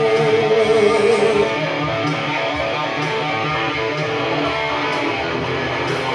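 Electric guitar playing an instrumental passage of a rock song, with no singing. A strong held note rings for about the first second and a half, then the playing carries on a little quieter.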